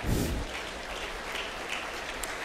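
Audience applauding steadily, with a brief louder burst right at the start.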